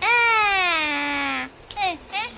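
An 11-month-old baby's loud, drawn-out cry that slides steadily down in pitch for about a second and a half, followed by a short rising vocal sound just before the end.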